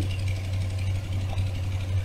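A steady low hum.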